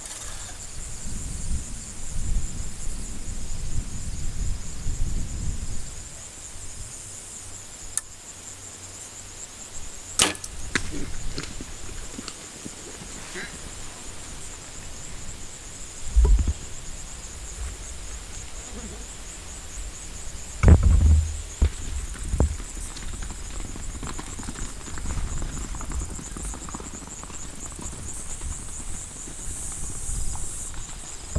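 A compound bow shot a third of the way in: one sharp snap of the string released at a water buffalo. It plays over a steady high-pitched insect drone, and is followed later by two dull, heavier thumps.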